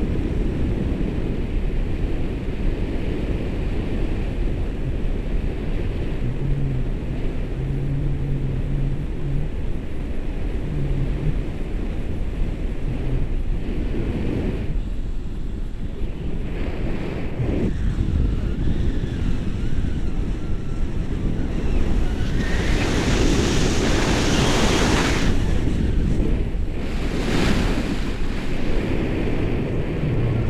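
Wind rushing over the camera microphone in paraglider flight, a steady low rumble that swells louder and hissier for about three seconds a little past two-thirds of the way through.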